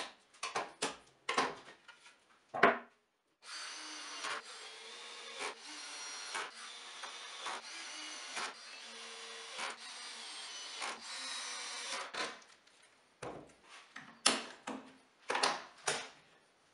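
Quick-grip bar clamps clicking and knocking as they are set on a plywood rail, then a cordless drill runs steadily for about eight seconds, boring into the plywood. Near the end there are more scattered clicks and knocks as the clamps are handled again.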